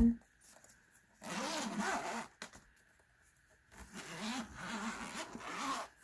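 Zipper on a faux-leather pencil case being unzipped in two pulls, a short one about a second in and a longer one from about the middle to near the end.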